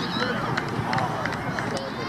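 Distant voices calling and shouting across a youth football pitch, with the general outdoor noise of the match.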